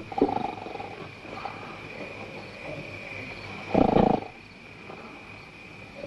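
An animal calling: a short call just after the start, then a louder, deeper grunt lasting about half a second around four seconds in, over the hiss of an old film soundtrack.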